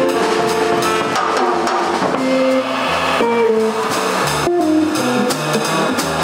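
Live jazz quartet playing: saxophone, archtop electric guitar, drum kit and upright bass, with the bass moving note by note under held melody notes and steady cymbal strokes.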